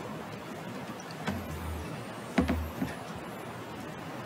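Quiet room noise broken by two low thumps, the second, just past the middle, sharper and the loudest, with a small knock after it.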